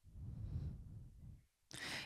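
Faint breathing between speakers: a soft out-breath, then a quick in-breath near the end just before speech starts again.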